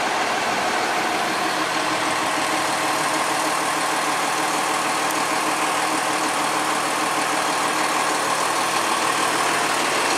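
Fire engine's diesel engine idling steadily, a constant rumbling hum close by.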